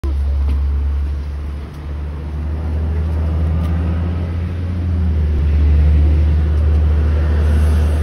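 Steady low engine rumble, like a vehicle idling close by, with no break or change in pitch.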